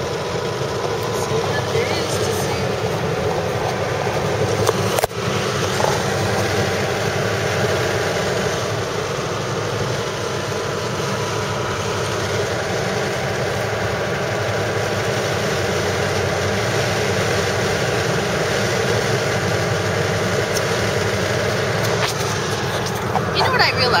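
Steady road and engine noise of a moving car, heard from inside the cabin, with a brief click about five seconds in.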